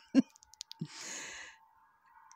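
A woman's brief vocal sound, then a breathy sigh lasting about half a second, about a second in.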